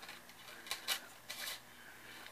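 A few light clicks and clinks from a thin metal craft chain being handled and laid across a burlap canvas, clustered about a second in.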